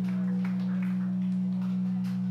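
Steady, unchanging low electric drone from the band's stage amplification, two strong low tones with fainter overtones held level throughout, under faint crowd noise.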